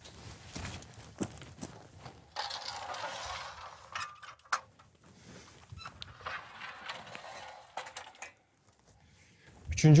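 Metal clinks, knocks and rattles from the steel frame and door of a lynx box trap being handled and reset, with a longer scraping rustle about two and a half seconds in.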